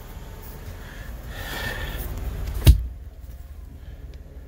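Movement and handling noise as a person climbs the ladder into a truck sleeper's upper bunk, with one sharp knock about two and a half seconds in.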